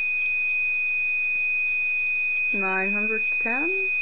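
Gamma Scout Geiger counter's piezo sounder giving one continuous high-pitched tone, with its clicker switched on while held to a radium-painted aircraft altimeter reading around 900 microsieverts per hour.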